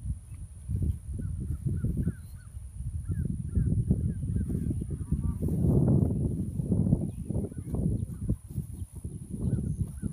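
Uneven low rumble of wind buffeting a phone microphone, with a few faint, short bird chirps in the first half and once more near the end.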